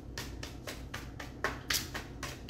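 A deck of cards being shuffled by hand: a steady run of soft card slaps, about four a second, a little louder around the middle.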